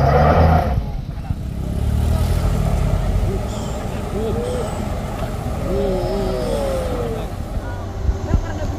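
Vehicle engine running steadily with a deep hum, louder in the first second, while people call out faintly in the background.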